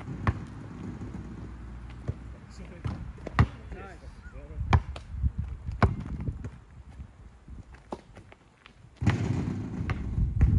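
Basketball bouncing on an outdoor asphalt court: sharp single bounces a second or so apart, the loudest in the middle. A louder rough noise comes in near the end.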